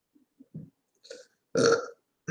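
A man burps once, short and loud, about one and a half seconds in, after a few faint mouth and throat sounds.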